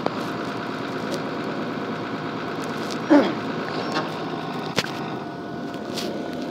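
Box truck engine idling steadily while it warms up. About three seconds in there is a brief, louder falling sound.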